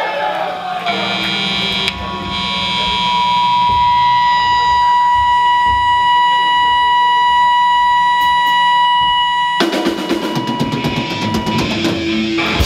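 Electric guitar feedback held as a steady high tone for several seconds, then the full metal band (distorted guitars, bass and drum kit) comes crashing in suddenly near the end, opening the song live.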